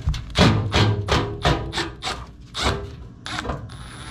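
Milwaukee M12 cordless impact driver fired in a quick series of short hammering bursts, backing out the mounting screws of a small transformer. A thin high whine joins it near the end.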